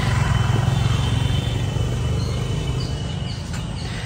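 A steady low rumble that slowly fades, with a few faint, short, high chirps in the second half.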